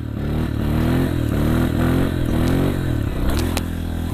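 Honda CRF125 dirt bike's single-cylinder four-stroke engine revving in repeated rising pulses, about two a second, as the throttle is worked through a wheelie. Two sharp clacks come near the end.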